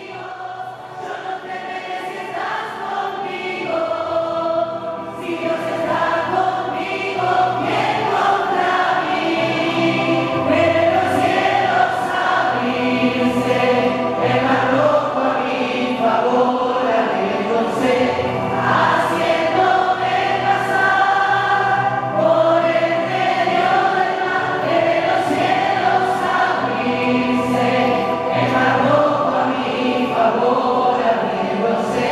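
Music: a choir singing a worship song, growing louder over the first several seconds and then steady.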